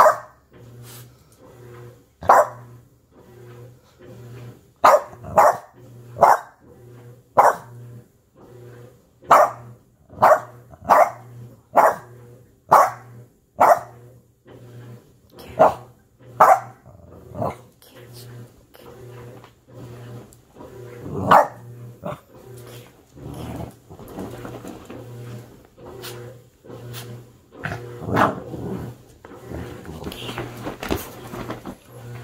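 Dog barking over and over in sharp single barks, about one or two a second, thinning to scattered barks in the second half with a couple of louder ones.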